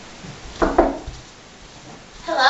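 Two quick knocks, one right after the other, a little over half a second in.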